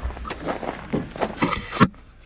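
Footsteps and handling of a handheld camera: a run of uneven short scuffs and knocks, with one sharper click near the end.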